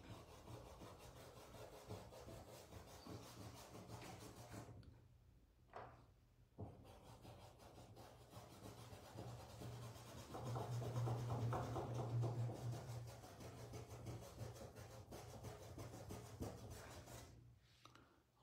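Faint scratchy rubbing of a paintbrush's bristles dragged over fabric as wet pink paint is blended, in short stretches with a brief pause partway through and a louder spell about ten seconds in.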